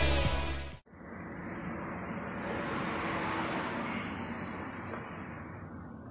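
Background music fading out and cutting off abruptly about a second in, followed by road noise of a passing vehicle that swells in the middle and fades.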